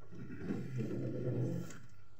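A low-pitched wordless voice sound of about a second, starting about half a second in.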